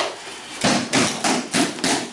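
Bodies and hands slapping a padded dojo mat as aikido partners are thrown and take breakfalls: a quick run of about six sharp slaps and thuds, roughly three a second.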